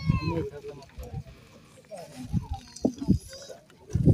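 Several people talking at once, a voice loudest at the start, then quieter scattered chatter with a few short clicks.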